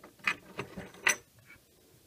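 Spent 9 mm cartridge casings clinking together as they are picked through by hand: several sharp metallic clicks, the loudest about a second in.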